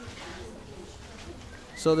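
Faint steady background noise during a pause in a man's speech; his voice starts again near the end.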